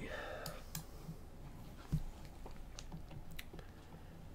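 Faint clicks from a computer mouse and keyboard: a few sharp, scattered ticks, with a soft thump about two seconds in.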